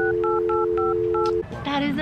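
Telephone sound effect: a steady dial tone with a run of short touch-tone keypad beeps dialed over it, cutting off suddenly about one and a half seconds in.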